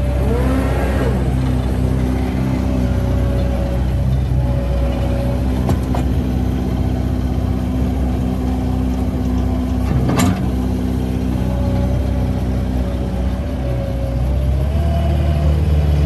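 Caterpillar 246D3 skid steer's diesel engine running steadily as the machine drives and works its bucket, with a higher whine that rises and falls in pitch. A sharp knock about ten seconds in.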